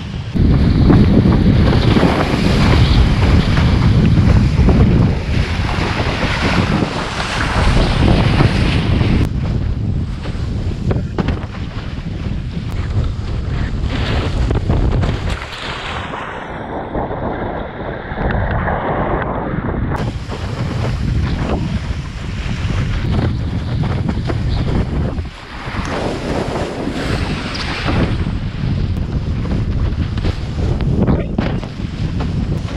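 Wind buffeting the microphone of a rig-mounted action camera, over water rushing and splashing against a windsurf board sailing fast through chop in a 15–20 knot wind. For a few seconds in the middle the sound goes muffled.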